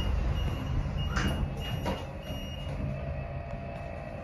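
Otis lift car doors sliding shut over a low rumble, with a high electronic beep repeating on and off as they close. About three seconds in, a steady hum sets in as the lift starts to move.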